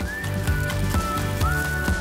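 Background music with held melody notes, over a thin splashing trickle of energy drink poured from a can onto the steel pan of a rolled-ice-cream freezer.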